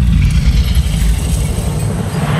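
A loud, deep rumble that starts suddenly, with a hiss of shifting metal coins above it: film sound design for a great heap of gold coins stirring, as a dragon moves beneath its treasure hoard.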